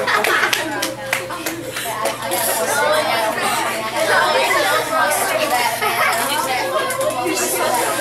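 A roomful of children chattering, many voices talking over one another with no one voice standing out.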